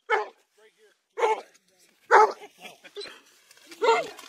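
A dog barking in short, sharp bursts, several times about a second apart.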